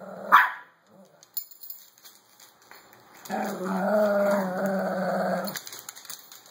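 Shih Tzus playing over a plush toy: a short bark at the start, then a steady play growl about three seconds in that lasts a little over two seconds.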